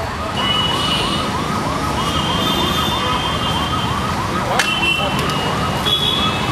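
An emergency vehicle's siren in a rapid yelp, its pitch rising and falling about three times a second, over steady street noise.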